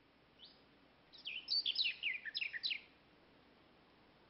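A small bird singing: one short rising note about half a second in, then a quick phrase of a dozen or so notes, each falling in pitch, lasting about a second and a half.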